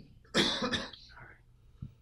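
A person coughs, a short harsh burst about a third of a second in.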